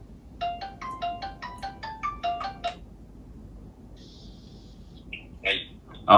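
A smartphone ringtone for an incoming call: a quick melody of short, clear notes that stops a little under three seconds in. A brief hiss and a short vocal sound follow near the end.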